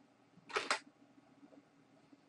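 A single keystroke on a computer keyboard, heard as two quick sharp clicks of the key going down and coming back up about half a second in; the rest is faint room tone.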